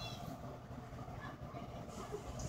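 Faint low steady hum under quiet room noise.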